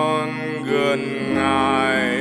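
Solo voice singing a slow Vietnamese worship song in long, wavering held notes over sustained piano chords.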